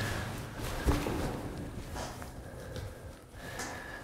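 Breathing and movement noise of a person stepping into a small, echoing rock-cut chamber, with a single sharp knock about a second in.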